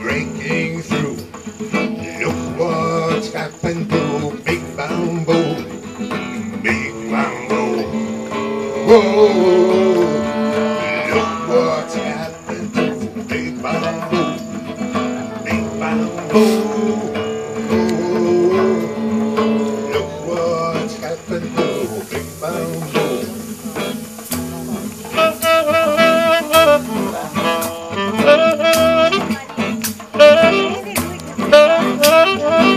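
Instrumental break of a small acoustic band: strummed acoustic guitar and hand drum under wavering lead lines from harmonica and tenor saxophone, with quick repeated lead notes in the last few seconds.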